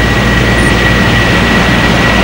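Steady low hum and hiss of background room noise, with a thin, steady high whine over it and no speech.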